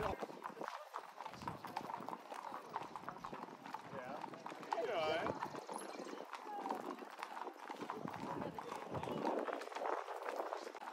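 Hooves of a group of walking horses clip-clopping on a paved street, a continuous irregular patter of many hoofbeats, with people's voices in the background.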